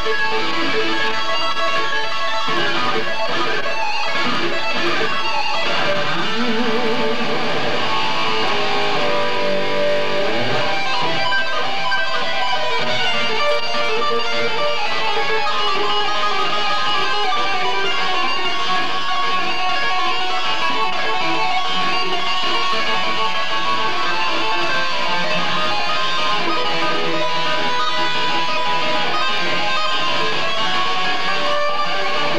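Electric guitar played through an amplifier: a continuous stream of fast single-note lines and held notes, with wide vibrato on sustained notes about six seconds in.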